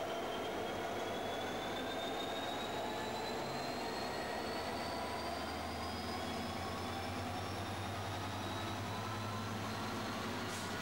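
Freightliner Class 66 diesel locomotive passing slowly at close range, its two-stroke V12 diesel engine running steadily. A high whine climbs slowly in pitch throughout, and a low hum grows stronger in the second half.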